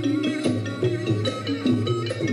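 Thai traditional dance music for a khon performance: a steady beat of low drum strokes under quick runs of short pitched percussion notes.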